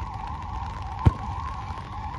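A football kicked once on artificial turf, a single sharp thump about a second in, over a continuous wavering whine and low rumble in the background.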